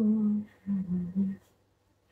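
A woman humming a melody without words: a held note that ends about half a second in, then three short lower notes, then silence near the end.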